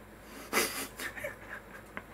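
A man's stifled, breathy laughter: a few short puffs of breath, the first about half a second in and more around a second in.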